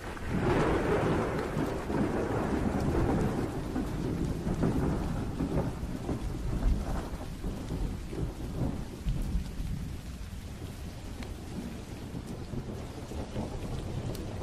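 Steady heavy rain with a low rolling rumble of thunder that swells just after the start and slowly dies away over the following seconds.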